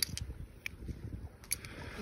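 Seashells clicking lightly a few times as a fingertip moves them about in an open palm, over a low steady rumble.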